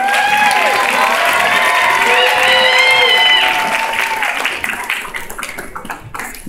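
Audience applauding and cheering with high whoops and shouts, loudest over the first three seconds, then dying away.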